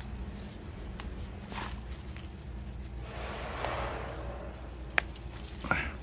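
Rustling of leafy garden plants as they are handled and picked by hand, loudest a little after the middle, with a single sharp click about five seconds in.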